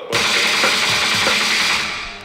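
A loud, dense rushing noise in the mixer's output, strongest in the upper range, whose brightest top end closes off near the end.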